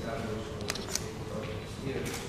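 Two still-camera shutter clicks in quick succession a little after halfway, over quiet conversation in the room.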